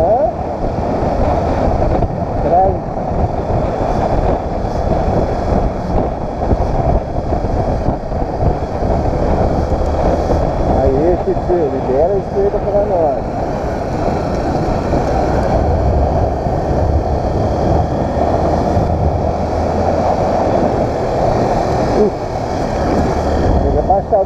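Motorcycle riding along a street, heard from the bike: a steady low engine note under heavy wind rush on the microphone. A voice hums briefly a few times, most clearly about 11 to 13 seconds in.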